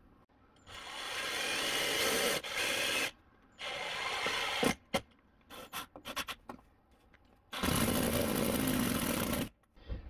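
Cordless drill driving self-tapping screws through vinyl downspout brackets into wood siding, in four runs of about half a second to two seconds, with clicks and knocks between them.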